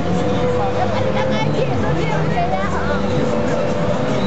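Funfair ambience: a steady mechanical drone with a constant whining hum from ride machinery, under a background of indistinct voices.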